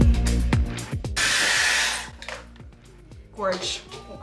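Pop music with singing, then a Dyson Airwrap's drying attachment blowing air, a loud even hiss that lasts about a second before cutting off sharply.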